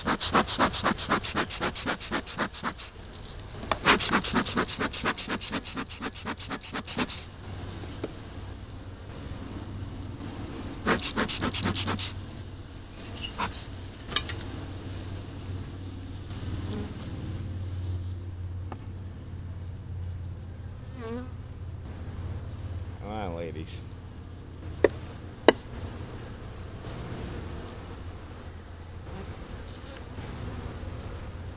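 Honeybees buzzing around an open hive box, with single bees flying close past the microphone, their pitch rising and falling. In the first seven seconds, and again briefly near 11 s, there is a fast run of short hissing puffs from a bee smoker's bellows. Two sharp ticks come about 25 seconds in.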